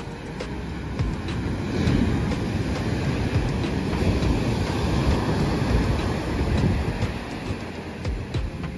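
Ocean surf breaking onto a sandy beach and against a rocky point, a loud rush of whitewater that swells from about two seconds in and eases near the end.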